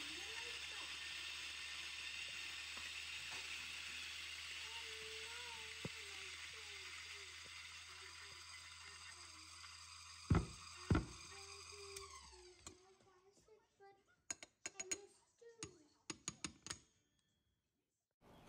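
Zerno coffee grinder running, its motor humming steadily under the hiss of grounds falling into a steel dosing cup. Two sharp knocks come about ten seconds in, then the grinder stops and a few small clicks follow.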